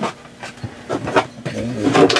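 A few light knocks and clatters as a wooden RV bed platform is lifted and its hinged wooden leg swings down.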